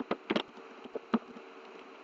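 Computer keyboard keys being typed, a handful of short irregular clicks, over a steady low buzz.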